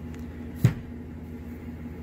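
A single sharp thump about two-thirds of a second in: a trail running shoe set down on a wooden dining table, over a steady low room hum.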